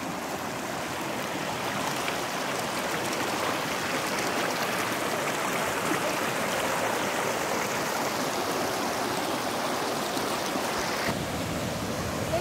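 Shallow rocky stream flowing over stones, a steady rush of running water. Near the end the sound changes abruptly.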